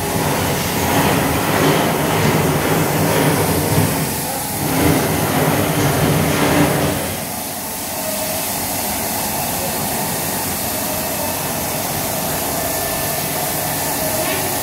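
MaxiS automatic carpet washing machine running: its rotating brush discs scrub a wet rug under water spray, a continuous mechanical drone with hissing water. The sound is louder and more uneven for the first several seconds, then settles to a steady level about seven seconds in.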